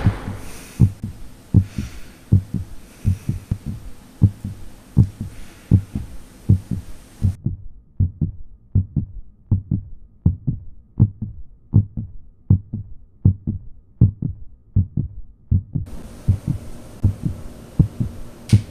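Heartbeat sound effect: a steady low double thump, lub-dub, about 75 beats a minute.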